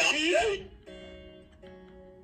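After half a second of a woman's laughing voice, an electric guitar plays quietly: two held chords, the second about three quarters of a second after the first.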